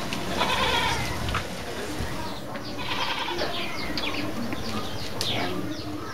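Two drawn-out animal calls about two and a half seconds apart, then a run of short, quick chirps near the end over steady outdoor background sound.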